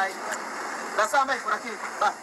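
Brief indistinct voices in the audio of a phone-recorded video, heard over a steady hiss with no low end.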